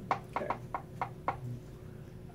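A series of about six short, sharp knocks spread over a second and a half, irregularly spaced.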